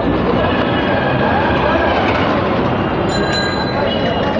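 Steady din of a busy street: traffic and background voices, with a brief high ring a little after three seconds in.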